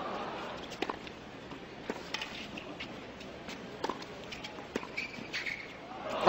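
Tennis rally on a hard court: racquet strikes on the ball about once a second, with short sneaker squeaks on the court surface in between.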